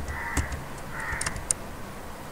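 A bird cawing: short, harsh calls repeated every second or so. A few sharp computer mouse clicks come in between.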